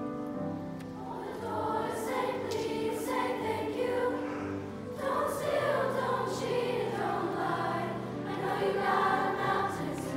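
Middle-school choir singing over a steady, low, held accompaniment, the voices coming in about a second in.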